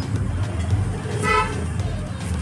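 Steady low street-traffic rumble, with one short vehicle horn toot a little after a second in.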